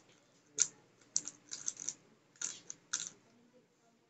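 MF3RS Stickerless V1 3x3 speedcube being turned in quick bursts of plastic clicks: a single turn, a rapid run of turns, then two more short bursts, stopping after about three seconds.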